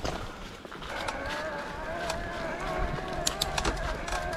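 Electric mountain bike's motor whining steadily under pedal assist, starting about a second in. Sharp clicks from the tyres on the gravel track and the drivetrain come near the end.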